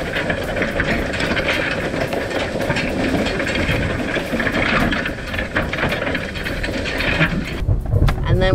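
Old four-bar hay rake clattering as it is towed across a hay field, its steel reel bars and tines rattling in a steady, busy clatter of small metallic clicks. The clatter stops abruptly near the end.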